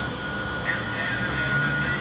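Heavy mining vehicle's diesel engine running steadily at idle, a low hum with a thin steady high tone above it.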